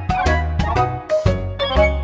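Recorded instrumental accompaniment music for a ballet syllabus exercise: piano notes and chords struck on a steady beat, each ringing and fading, over sustained bass notes.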